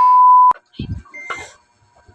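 A loud, steady 1 kHz test-tone beep, the tone that goes with TV colour bars, cut off abruptly with a click about half a second in. A few faint short sounds follow.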